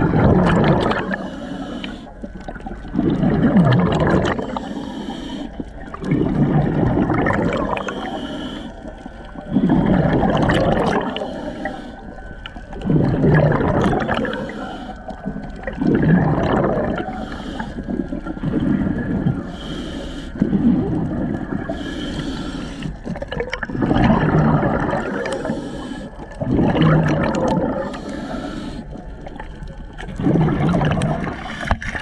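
Scuba diver's exhaled bubbles gurgling out of the regulator about every three seconds, each burst starting sharply and fading, with a fainter hiss of inhaling between some of them, heard underwater through the camera housing.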